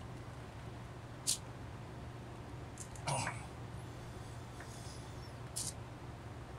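A few faint, short clicks and knocks of hand-tool work on a chainsaw's casing as a tight, thread-locked fastener is worked loose, heard over a steady low hum. Three short sounds are spread through the stretch, the one about three seconds in a little louder.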